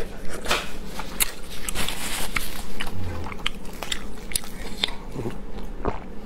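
Close-miked mouth sounds of chewing a piece of braised meat: irregular wet clicks and smacks, several to the second.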